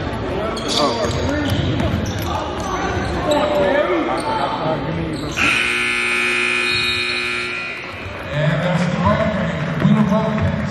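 Basketball bouncing on a gym floor amid players' voices, echoing in a large hall; about halfway through, a gym scoreboard horn sounds one steady blast lasting about two and a half seconds.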